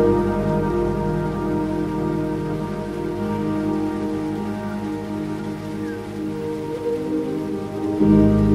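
Soft ambient background music of long held chords over a steady rain-like hiss; the low notes fade away near the end.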